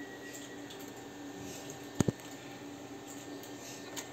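Two sharp clicks in quick succession about halfway through, from hands working on the sewing machine's parts, over a faint steady hum.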